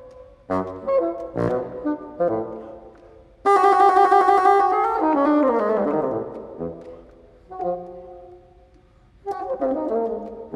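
Unaccompanied bassoon playing a modern solo sonata: a run of short detached notes, then a loud held note about three and a half seconds in that slides downward, a quieter held note, a brief pause, and more quick notes near the end.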